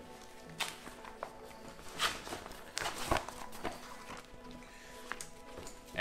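Paper maps being slid into a thin plastic map case: scattered soft rustles and taps, the loudest about two and three seconds in. Faint steady background music runs underneath.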